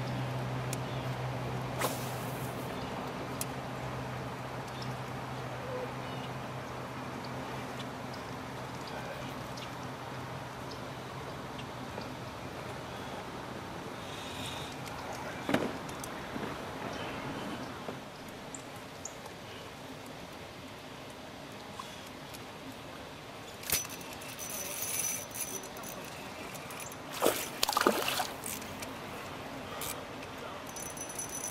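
Water lapping and sloshing against a canoe, with the clicks and knocks of a spinning reel and rod being handled and a few sharper clicks near the end. A low steady hum runs under it and fades out about halfway.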